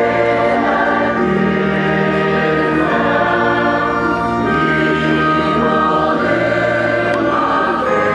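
A choir singing sacred liturgical music in long held chords that change every second or two.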